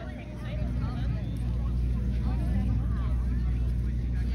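Steady low rumble of an engine running, with faint voices in the background.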